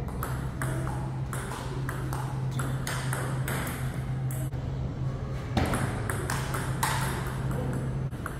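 Table-tennis ball in a fast rally, clicking off the paddles and bouncing on the Donic table, about three hits a second. A steady low hum runs underneath.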